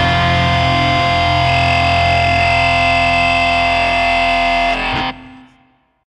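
The final chord of a blackened crust song: distorted electric guitar and bass held and ringing steadily, with a high whine joining a second or so in. It cuts off sharply about five seconds in and dies away to silence.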